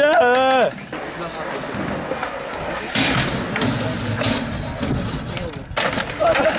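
Skateboard rolling on concrete, with sharp clacks of the board about three seconds in and again, louder, just before the end.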